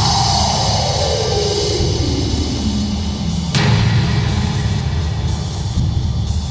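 Experimental electronic music: a dense, heavy low end under a tone that sweeps steadily downward over the first three seconds, then a sudden change into a new section about three and a half seconds in.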